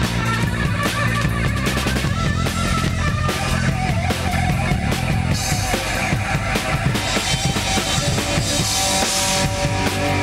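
Live rock band playing, the drum kit loudest, with rapid kick and snare hits over sustained bass and guitar.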